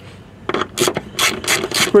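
Hand ratchet clicking in a quick run of short clicks, about four or five a second, starting about half a second in, as it backs out a factory 6 mm bolt with a 10 mm head.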